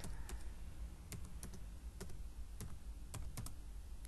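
Computer keyboard keys clicking as a word is typed, about a dozen separate, unevenly spaced keystrokes.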